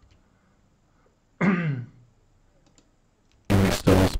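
A man gives a short throat-clearing sound, about half a second, its pitch falling. Near the end, loud, noisy playback of the experimental recording starts.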